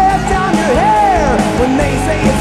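Rock music from a band's cassette recording, with a note that slides up and falls back about a second in.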